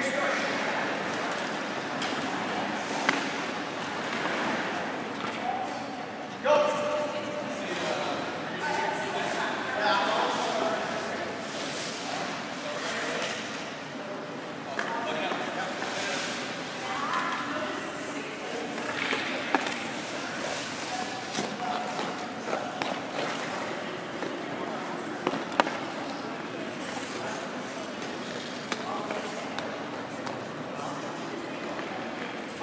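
Indistinct voices in an ice rink, with a few sharp knocks: one about three seconds in, one at about six seconds, and others later on.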